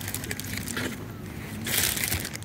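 Crinkling and crackling of a deflated balloon and its string being handled and pulled at, with a louder rustle near the end.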